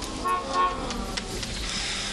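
Car horn honking, one held tone that starts a moment in and is strongest for about a second before it weakens. It is a waiting ride signalling its arrival.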